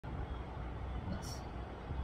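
Low, steady background rumble with a brief soft hiss a little over a second in.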